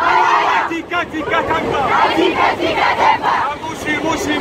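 A group of young men and women shouting a chant together, many voices at once and loud.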